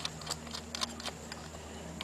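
Faint, scattered light clicks of metal parts being handled by hand: the variator nut and washer being threaded onto the crankshaft of a GY6 150cc scooter engine, against the finned front sheave.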